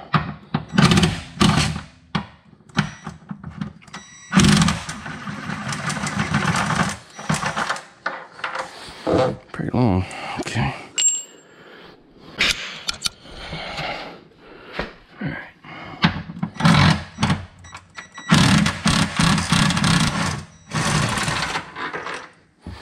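A power wrench runs in bursts of a few seconds, about four seconds in and again twice near the end, backing out the front mounting bolts of a Tesla Model 3 rear drive unit. Short metal clicks of tool handling come between the bursts.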